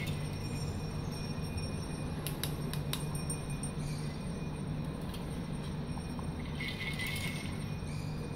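Steady low background hum, with a few faint plastic clicks about two to three seconds in and a short rattle near the end as a plastic light stick is handled.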